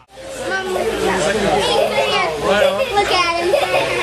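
Young children talking and calling out over a crowd's chatter, with high, lively voices, in a large room that echoes.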